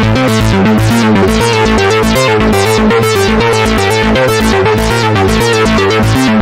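Softube Modular software Eurorack synth, built from Doepfer VCO, envelope and filter models with added saturation, playing a fast stream of short notes that step in pitch, with steady low pulses about five a second. The pitch steps come from a sample-and-hold clocked by an LFO.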